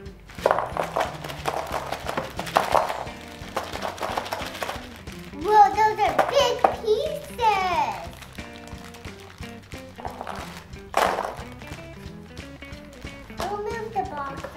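A plastic bag of cardboard jigsaw puzzle pieces crinkling as the pieces are tipped out and clatter onto a table for the first few seconds, then pieces being shuffled, with a single thunk later on. Background music plays throughout.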